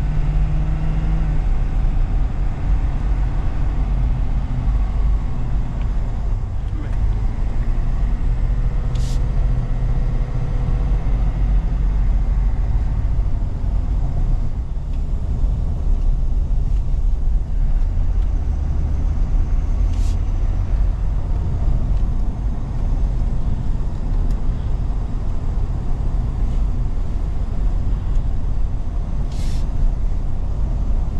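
Inside the cab of a 2023 Ford Super Duty pickup on the move: a steady low rumble of engine and tyre noise, with the engine note climbing over the first several seconds as the truck gets up to speed. Three short, faint high ticks come about ten seconds apart.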